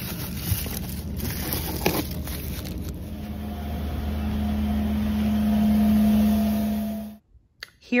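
Grocery store background: a steady low hum with a few light clicks and rustles as bagged produce is handled. From about three seconds in, a steady hum grows louder, then cuts off suddenly near the end.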